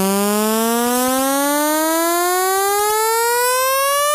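A lone synthesizer note, rich in overtones, sliding steadily upward in pitch as a build-up riser in a dubstep track. The drums and bass have dropped out beneath it.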